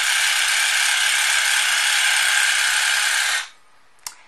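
2NICE portable rechargeable water flosser running at its maximum pressure setting: its pump buzzes steadily while the water jet sprays into a glass bowl and splashes. It switches off suddenly about three and a half seconds in.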